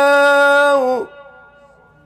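Male Qur'an reciter holding the final long vowel of "wa 'ashiyyā" on one steady note in melodic tajwid recitation, cutting off about a second in with a short echo trailing.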